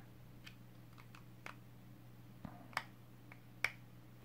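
Small, faint plastic clicks as the halves of a 3D-printed camera case are worked apart by hand, a scattered handful of them with two sharper clicks near the end.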